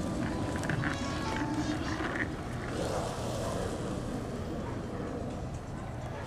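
Wheels of a Hamboard giant skateboard rolling steadily as the rider pushes and carves turns.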